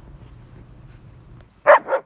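A short, loud animal call near the end, in two quick parts, over a quiet background.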